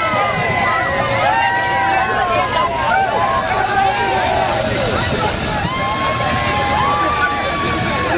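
A crowd of people talking and calling out at once, with a low steady vehicle engine hum underneath.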